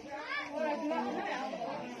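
Indistinct chatter: people's voices talking, with no other sound standing out.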